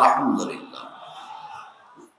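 A man's voice, amplified through a public-address system, ends a word on a falling pitch. Its echo then trails off and fades away over the next second and a half.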